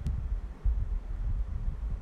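Irregular low rumble of wind buffeting the microphone, starting suddenly with a faint click.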